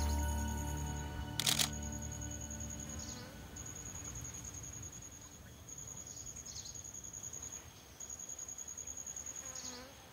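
Soft background music fading out, then a steady high-pitched insect trill in the mangrove forest that pulses several times a second. A short sharp burst sounds about a second and a half in.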